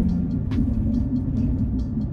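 A car's fan going nuts, a steady hum over the low rumble of the car driving.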